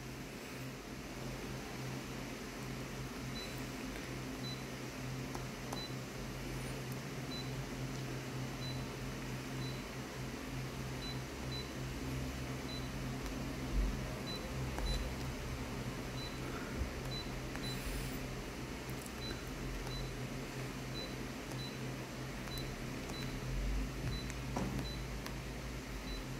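Office colour copier standing by with a low steady hum, a faint high tick repeating about every two-thirds of a second, and a few soft taps on its touchscreen about halfway through.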